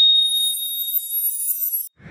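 A steady, high-pitched electronic tone with a thin shimmer of higher tones above it, starting abruptly and cutting off suddenly just before two seconds: a synthetic sound effect of an animated logo sting.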